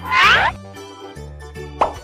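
Children's background music with cartoon sound effects: a quick, loud rising glide at the start, and a short pop near the end as a picture appears.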